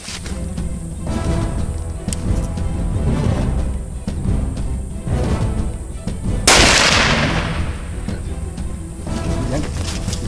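A single hunting-rifle shot about six and a half seconds in, a sharp crack that trails off over about a second, over background music.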